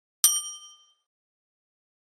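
A single bell-like ding sound effect, the notification-bell chime of a subscribe-button animation. It strikes shortly after the start and rings out, fading within under a second.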